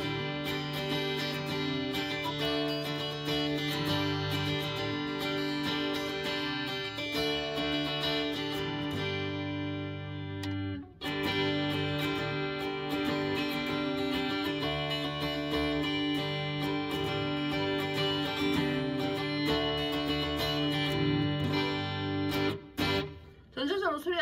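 Ibanez GIO electric guitar with two humbuckers, played through an amp in ringing chords and picked arpeggios, demonstrating the tone of the fourth and then the fifth pickup-selector position. The playing stops briefly about eleven seconds in, where the selector changes position, and breaks up near the end.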